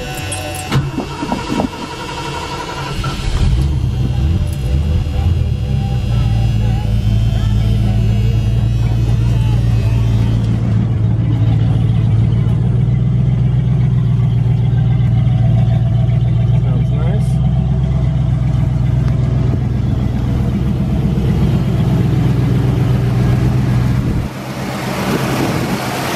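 1978 Mercury Cougar's carbureted V8 cranked and started cold after sitting for days, catching in the first few seconds without the gas pedal, then idling steadily and smoothly. Car radio talk is heard over the start.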